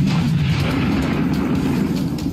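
Explosion: a sudden loud blast, then a low rumble that carries on for about two seconds.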